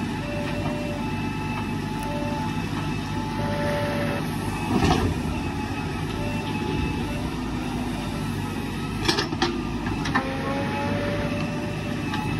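JCB 3DX backhoe loader's diesel engine working under load as the backhoe digs and swings, with a whine that shifts in pitch. A loud clattering burst about five seconds in is a bucketload of earth dropping into the truck body, and two short sharp knocks follow a little after nine seconds.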